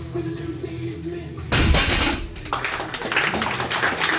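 Heavy loaded barbell set down on the platform after a deadlift, landing with a loud crash about a second and a half in, followed by applause.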